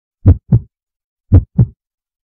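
Heartbeat sound effect: two double thumps (lub-dub), about a second apart, deep and loud with dead silence between them.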